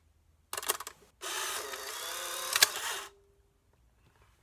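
Polaroid Spectra SE instant camera taking a picture: a quick shutter click about half a second in, then after a short pause the film-ejection motor runs with a steady whir for nearly two seconds, driving the print out through the rollers, and stops with a click.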